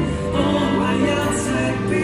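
Amplified Cantopop music from a busker's portable PA: a backing track with a male voice singing into the microphone.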